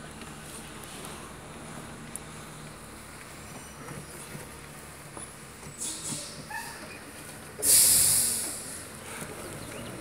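A car's engine and road noise heard from inside the cabin while driving slowly, a steady low hum. About three quarters of the way through, a loud hiss starts suddenly and fades away over a second or so.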